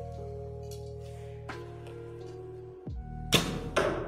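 Background music with long held notes. Near the end, a bow shot: two sharp, loud cracks about half a second apart, the string's release and the arrow striking the target.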